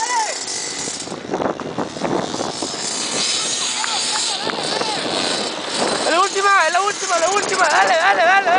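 Small youth dirt bike engines revving hard, their pitch rising and falling in quick repeated surges as the riders work the throttle around the track; the surges are loudest from about six seconds in.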